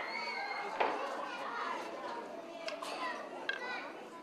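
Young children's high voices chattering and calling out, with a few sharp clicks along the way.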